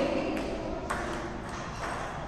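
Table tennis ball striking paddles and table: two sharp clicks about half a second apart, then a fainter one near the end.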